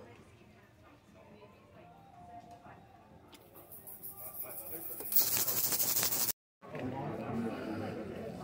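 A hiss as a freshly polished gold ring is cleaned in a strainer dipped in cleaning liquid. The hiss builds from about three seconds in, is loudest and brightest just past five seconds, then cuts off suddenly, leaving faint room noise.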